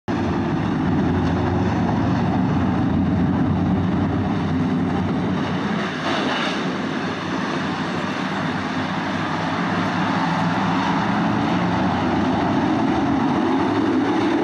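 A pack of dirt late model race cars' V8 engines running together at a steady, even pace-lap speed: one continuous layered drone with no sharp revving, as the field rolls toward the green flag.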